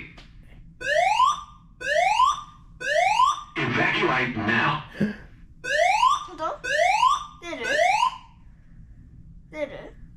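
A building emergency warning system over the hotel's public-address speaker: rising 'whoop' alarm tones about once a second, three of them, then a brief spoken announcement, then three more whoops. This is the Australian-standard evacuation whoop tone.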